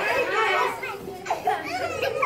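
Young children's excited voices calling out as they run about playing.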